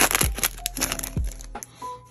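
Foil booster-pack wrapper crinkling and trading cards rustling as they are handled, densest in the first half second, with music in the background.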